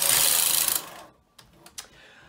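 Brother 260 double-bed knitting machine's carriage and coupled ribber carriage pushed across the needle beds: a loud mechanical rush lasting about a second that cuts off, followed by a few light clicks.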